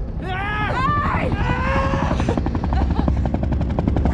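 Helicopter rotors chopping, a rapid, even beat that grows plain in the second half, with a person's drawn-out shout near the start.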